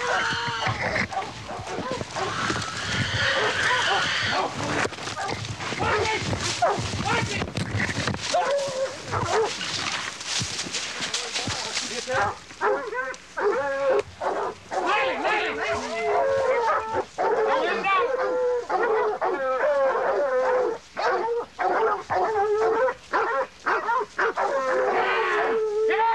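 A pack of hog-hunting dogs barking and baying in rapid, repeated calls from about halfway through. The first half is a rushing, crashing noise of running through brush.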